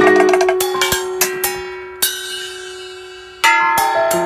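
Small metal gongs and bowls struck with sticks, each stroke ringing and dying away, over one long ringing tone. The sound thins and fades through the middle, then a loud new cluster of strikes and piano notes comes in near the end.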